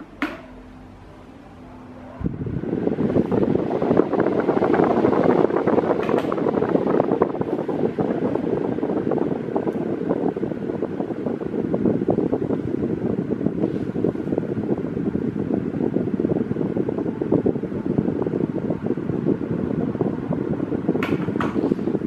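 Mallory ECO TS 30 cm 42 W table fan switched on with a click. A faint motor hum follows, then about two seconds in a steady rush of air from the spinning blades comes up suddenly and holds.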